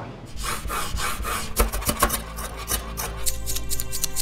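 Quick rubbing and scraping strokes of sushi being prepared by hand, over background music whose held chords come in about three seconds in.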